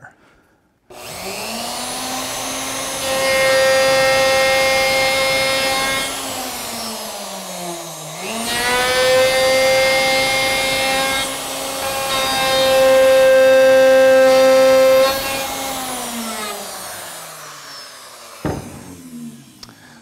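Router fitted with a three-quarter-inch pattern bit starting up about a second in and cutting a tenon cheek in light passes. Its steady high whine grows louder during the cuts, sags briefly in pitch about eight seconds in and recovers, then winds down near the end, followed by a click.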